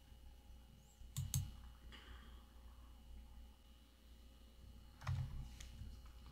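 Faint clicks at a computer: two close together about a second in and two more about five seconds in, over near-silent room tone.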